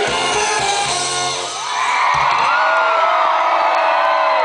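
A live band's song ending: drums and bass stop about two seconds in, and a concert crowd cheers and whoops.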